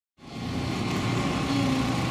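An engine running steadily at low speed, a low rumble that fades in from silence a moment in.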